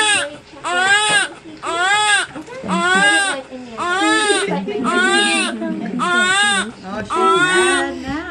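Newborn baby crying in a run of short wails, about one a second, each rising and then falling in pitch.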